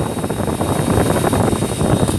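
Two-stage reciprocating air compressor running: a dense, rapid knocking from the pump with a steady hiss of air over it.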